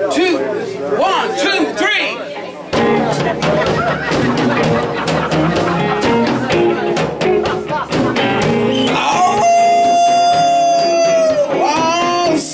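Live blues band in a bar: electric guitar playing with little else at first, then the full band with drums coming in about three seconds in. Near the end a singer holds one long note that falls away.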